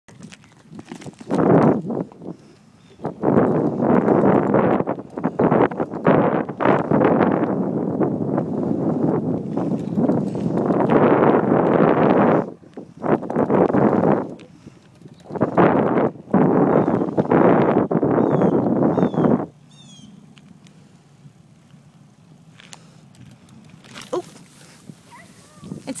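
Loud wind noise on a handheld phone's microphone, coming in long gusts with brief quieter gaps, then dropping away about three-quarters of the way through.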